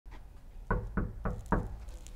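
Four quick knocks on a wooden door, evenly spaced about a quarter-second apart, beginning just under a second in.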